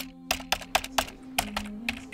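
Footsteps of several people walking off together: quick, irregular clicking steps, several a second, with a faint steady low hum underneath.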